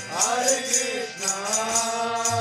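Kirtan: a voice singing a devotional chant, with small hand cymbals (kartals) striking a steady beat about four times a second.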